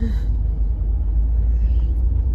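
Steady low rumble of a car's engine and tyres heard from inside the cabin as it drives slowly.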